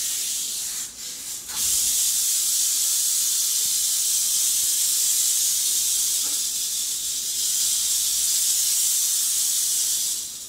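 Canebrake rattlesnake rattling its tail in a steady high-pitched buzz, a defensive warning as it is hooked up out of its enclosure. The buzz falters briefly about a second in and then holds even.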